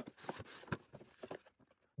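Faint handling sounds of a cardboard kit box: light scrapes and a few soft taps as its inner insert is slid out.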